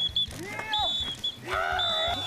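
Men shouting and grunting with strain as they pull in a tug-of-war, over several short, high blasts of a whistle.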